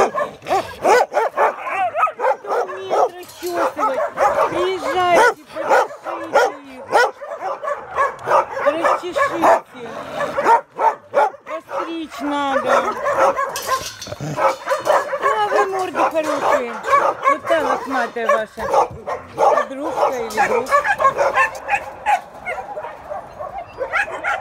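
Several dogs whining, yelping and barking at once in a dense, continuous chorus of rising and falling calls with sharp barks mixed in.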